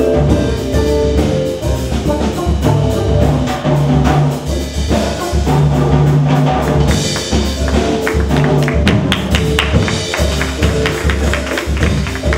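A live jazz-fusion band playing: drum kit, upright bass and horns with vibraphone. From about eight seconds in, a run of quick struck notes comes to the fore, with the vibraphone played with mallets.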